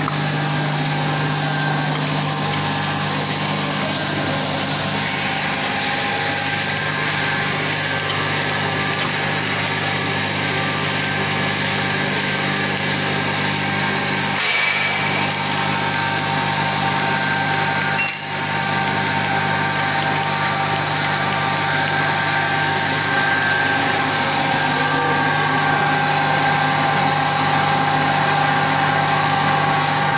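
Mild-steel tube mill running: a steady machine hum from its drive and forming rolls, with several steady tones held over it. A short sharp sound breaks in about fourteen seconds in and again about eighteen seconds in.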